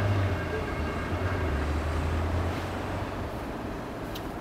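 A low droning rumble that sinks slightly in pitch and dies away about three seconds in, over a steady background hiss.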